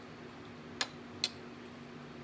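A metal spoon clicking twice against a metal pan, about half a second apart, over a faint steady hum.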